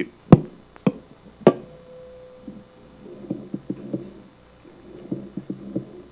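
A handheld microphone being handled and set down on a round table. Three sharp thumps come in the first second and a half, the first the loudest, followed by quieter clusters of muffled knocks.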